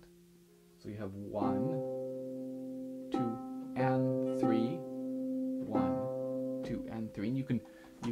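Concert harp strings plucked by both hands in a slow pattern starting about a second in, the notes left ringing and overlapping, demonstrating a three-against-two rhythm between the hands. The ringing stops about a second and a half before the end.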